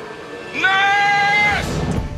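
A man crying out in pain: one loud, sustained cry lasting about a second, held at a steady pitch and dropping slightly as it ends.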